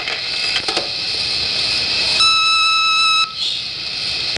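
Answering-machine tape playing back with a steady hiss, and a single electronic beep about a second long just past the middle, the tone that marks the start of a new message.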